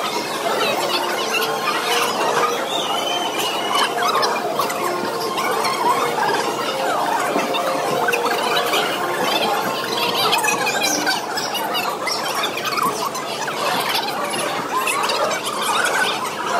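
Voices chattering continuously, sped up so that they sound high-pitched and squeaky, with quick darting rises and falls in pitch and no intelligible words.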